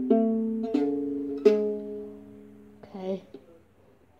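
Ukulele strummed three times, about two-thirds of a second apart, each chord left to ring and fade out.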